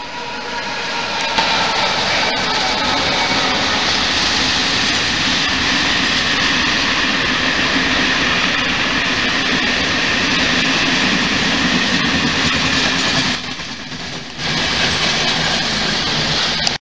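Freight train hauled by a Renfe class 251 electric locomotive passing close by: its wheels and wagons make a loud, steady rolling rush, with a short dip about thirteen seconds in before it comes back up.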